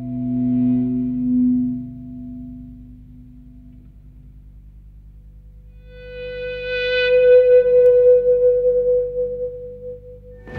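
Background music of held, sustained tones: low notes fade out over the first two seconds into a quiet drone, then a long single higher note swells in about six seconds in and holds to near the end.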